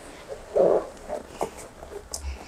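A person shifting position on hands and knees on a foam exercise mat: a short rustle about half a second in, with a few faint taps.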